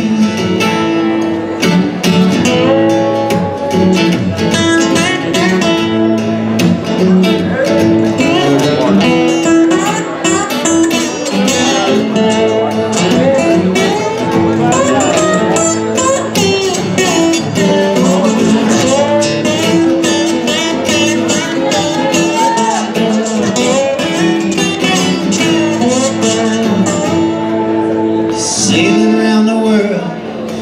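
Two acoustic guitars playing an instrumental passage: one strums chords while the other plays a lead line whose notes bend in pitch.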